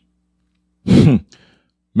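A person's short voiced sigh about a second in, falling in pitch, followed by a faint breath; speech begins at the very end.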